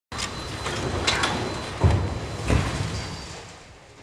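Building demolition with a crane's wrecking ball: rubble and metal crashing and scraping, with heavy thuds about two and two and a half seconds in. The noise dies away toward the end.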